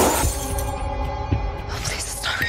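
Something shatters sharply on a hard floor right at the start, its shards scattering, over horror-trailer music of long held tones.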